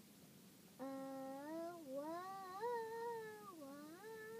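A young girl singing a long wordless note that slides up and down in pitch. It starts about a second in and runs for nearly three seconds, with a new note beginning right at the end.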